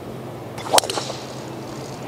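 A golf club striking the ball on a tee shot: a single sharp crack a little under a second in, followed by a soft hiss.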